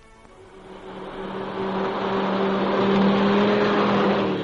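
Radio sound effect of a speeding car approaching: a steady engine hum with road noise that grows louder over the first three seconds, then holds.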